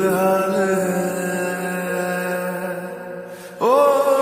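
Slowed-down, reverb-heavy lofi version of a Hindi film song: a male singer holds one long note, sliding up into it at the start, and begins a new phrase with another upward slide near the end.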